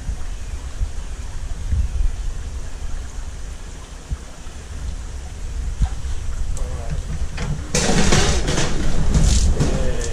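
Catla and giant Siamese carp panicking in an aquarium: a few knocks, then from about three-quarters of the way in a loud burst of splashing and thrashing with repeated knocks against the tank lids. Skittish carp bolting and hitting everything under stress.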